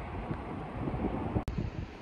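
Wind buffeting the microphone outdoors, a gusty rumble, with a short click and dropout about one and a half seconds in.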